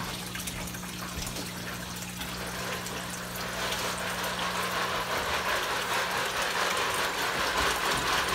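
Water pouring from a pump-fed waterfall spout into a pond, a steady splashing that grows louder from about three seconds in. A low steady hum sits under it for the first half.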